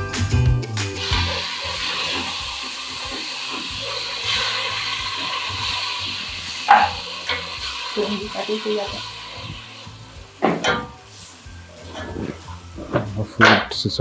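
Food frying in a pan on the stove: a steady sizzle that fades away after about nine seconds.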